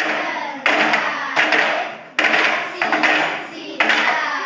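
A group of children clapping and chanting together in a rhythm, in a string of short, even bursts with sharp starts.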